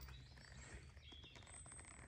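Near silence: faint outdoor ambience with a few faint, high thin calls typical of distant birds.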